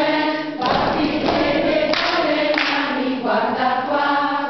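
A group of voices singing a melody together. A dense noise runs underneath from about half a second in until past three seconds.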